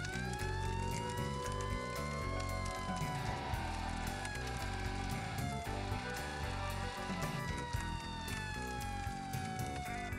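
Fire engine siren wailing: its pitch rises, then slowly falls, and rises and falls again in the second half. Music plays underneath.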